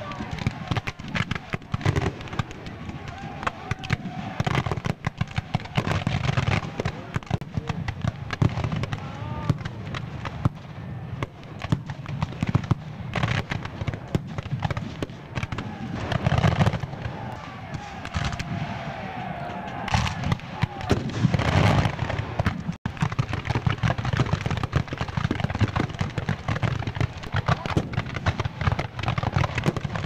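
Black-powder musket fire from Civil War reenactors' battle lines: a dense, continuous crackle of scattered shots, with a few louder reports about two-thirds of the way through. Distant voices shout under the firing.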